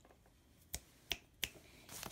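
Three short, sharp clicks, about a third of a second apart, in otherwise near-quiet room tone.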